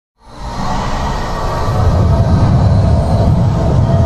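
Cinematic intro music with a deep rumbling drone that swells up from silence in the first half second and then holds steady and loud.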